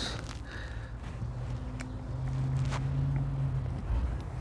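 Inner tie rod tool being twisted by hand to lock it onto the tie rod: a few faint light clicks of the tool's parts, under a low steady hum that swells from about a second in and fades near the end.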